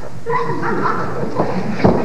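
A person's voice sounding without clear words, held pitched tones rather than ordinary talk, with two short knocks near the end.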